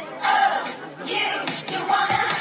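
A group of girls shouting a cheer in unison, in a few short rhythmic shouts.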